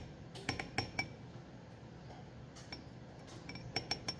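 A stainless steel bowl clinking and tapping as melted chocolate is poured from it into a tall tumbler: a few sharp metallic clinks with brief ringing in the first second, then several more in the last second and a half.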